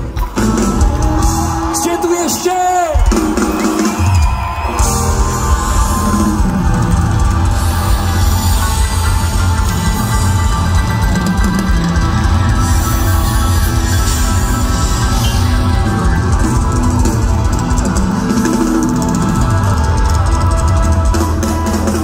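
Live rock band playing through a large outdoor PA, heard from the crowd: drums, bass and electric guitars. A few seconds in, the low end drops out briefly before the full band comes back in.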